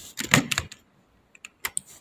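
Computer keyboard keystrokes: a quick run of clicks in the first half second, then a few scattered single clicks near the end.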